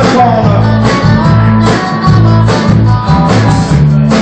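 Live rock band playing loudly: electric guitars over a bass line and a drum kit keeping a steady beat.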